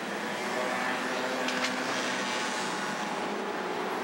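Street traffic: steady noise of cars and engines moving through an intersection, with a brief sharp high sound about a second and a half in.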